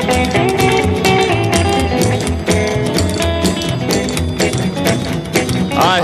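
Instrumental break of a 1961 rockabilly record: guitar over a bass line and a steady beat. The singer's voice comes back in right at the end.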